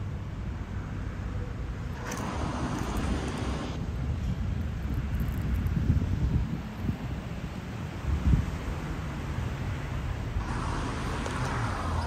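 Outdoor street ambience: a steady low rumble of wind on the microphone and road traffic, with two louder swells of passing noise, about two seconds in and near the end.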